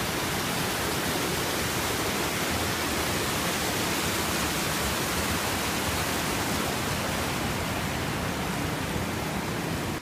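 Rushing creek water tumbling over rocks: a steady, dense rush without pause.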